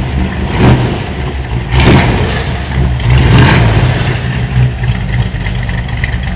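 1957 Chevrolet Bel Air's V8 engine running just after a start, swelling in revs three times in the first few seconds before evening out. It has a lumpy lope from its camshaft as it settles toward idle.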